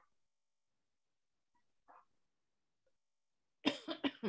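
Near silence on a video call, broken near the end by one short vocal sound from a person, such as a cough or throat-clearing.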